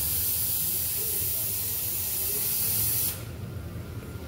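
Steady hiss of compressed air over a low hum, cutting off suddenly about three seconds in.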